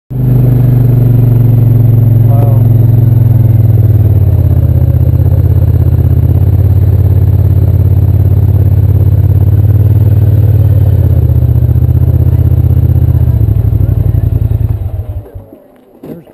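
ATV engine running steadily under way, loud and close, with small shifts in engine pitch. It dies away about a second before the end as the machine stops.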